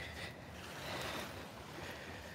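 Faint, steady outdoor background on a beach: a low rumble of wind on the microphone with the soft wash of the nearby sea.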